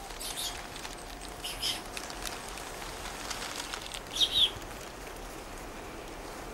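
Tropical forest ambience with a few short high bird chirps, the loudest and clearest about four seconds in, over a faint steady background tone.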